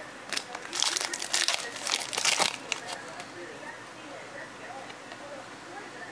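Foil wrapper of a Topps Fire trading-card pack crinkling and tearing open by hand, a crackly rustle in the first two and a half seconds.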